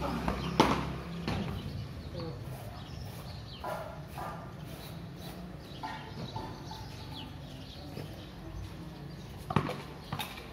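Two sharp knocks from a game of cricket with bat and ball: the louder one about half a second in, the other near the end.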